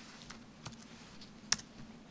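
A few sparse clicks of a computer keyboard, keys pressed to run a Python script, the sharpest about one and a half seconds in.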